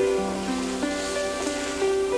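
Soft background music on a plucked string instrument, sustained notes stepping from one to the next every half second or so.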